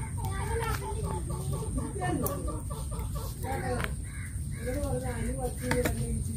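Birds and poultry calling, with a quick run of short repeated calls in the first half, mixed with faint voices of people.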